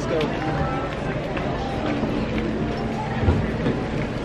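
Indistinct voices and steady background noise in a busy shop, with rustling handling noise from a handheld camera on the move.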